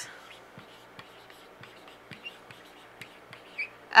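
Dry-erase marker writing a word on a whiteboard: faint scratching and light taps, with a few brief squeaks in the second half.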